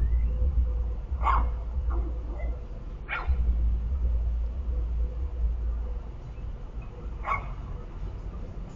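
A dog barking three times, single short barks a couple of seconds apart, over a low steady rumble.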